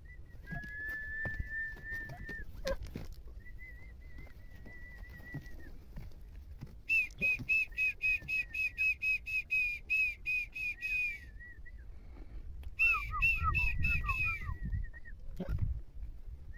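High whistled notes: two long, nearly steady whistles, then a fast run of short repeated chirps about four a second, and a second shorter run near the end with lower falling notes mixed in. Low rustling and handling noise lie underneath.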